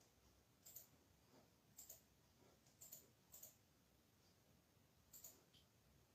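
Near silence: room tone with faint, sharp high-pitched clicks at irregular intervals, about five in all.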